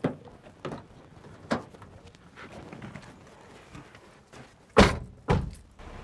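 A few light knocks and steps, then a car door slammed shut with a loud, solid thunk near the end, followed by a second, softer thump.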